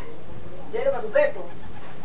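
Amazon parrot giving two short vocal sounds close together about a second in, between its talking phrases.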